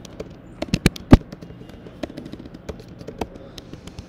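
Typing on a computer keyboard: a quick run of sharp key clicks in the first second or so, then lighter, scattered key taps.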